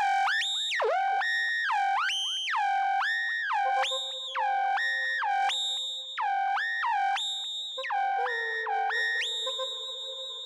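Electronic music: a clean, synthesizer-like tone swooping smoothly up and down between a few held pitches, repeated over and over. A steady lower drone joins it about four seconds in.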